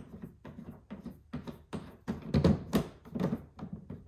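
Hard plastic propane-tank cover handled while its small twist-knob latches are turned: a run of irregular clicks, taps and knocks, with a few louder knocks in the middle.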